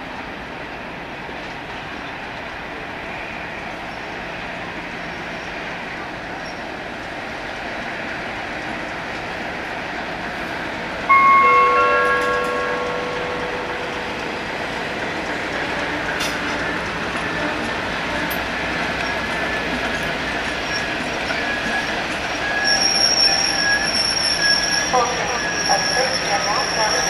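Transrail Class 56 diesel locomotive pulling away, its engine growing gradually louder. About eleven seconds in a train horn sounds once, loud and short, fading over a second or two. Near the end a high, steady squeal of wheels on the rails comes in.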